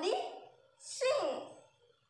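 A woman's voice speaking in short phrases, the second one falling in pitch, with a brief pause near the end.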